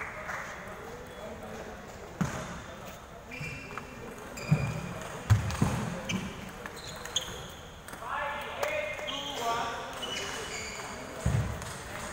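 Table tennis ball clicking off paddles and the table in a short rally, a few sharp clicks under a second apart around the middle. Near the end comes a thud of the ball dropping to the floor. Voices chatter across a large hall throughout.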